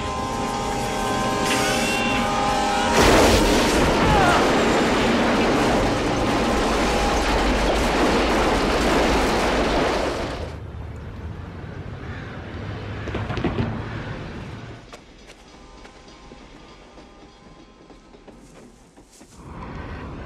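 Film soundtrack of a diesel locomotive: its multi-tone air horn blaring, then, about three seconds in, a loud sustained crash and rumble as the train smashes through a car on the tracks. The crash dies away about ten seconds in, leaving fainter sound.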